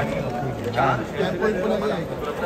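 Men talking over one another: overlapping speech and chatter, with no other distinct sound.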